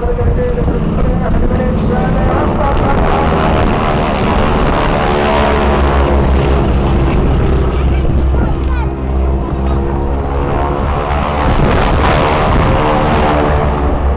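Piston engines of two Boeing Stearman display biplanes droning, their pitch sliding up and down as the aircraft pass. Heavy wind rumble on the microphone runs underneath.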